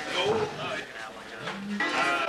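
Overlapping chatter of several people talking in a small room. A low, drawn-out voiced sound rises and holds briefly near the end.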